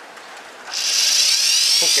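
Brushed electric motor switched on and spinning up: a high whine starts suddenly a little under a second in and climbs steadily in pitch as the motor gathers speed.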